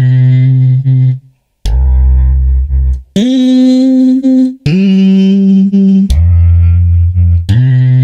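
A hummed sample played through Logic Pro X's Quick Sampler on six keys in turn, jumping between low and high pitches. With Flex mode on, each note lasts about the same time, about a second and a half, whatever its pitch.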